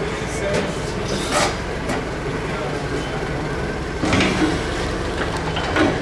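Nissan forklift engine idling steadily, with a few short knocks and clanks from the loaded bin and forks.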